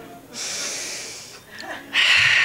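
A woman's audible breath close to the microphone, about a second long and starting a moment in; a louder breathy burst begins right at the end.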